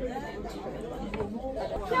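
Chatter of diners talking at nearby tables, several voices overlapping.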